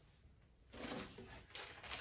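Plastic packaging wrap rustling and crinkling as helmet parts are handled, starting after a short quiet moment about a second in.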